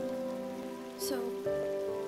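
Steady rain falling, with soft held notes of background music under it.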